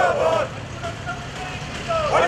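A voice speaking for about half a second, then a quieter stretch of faint voices over a steady low street rumble.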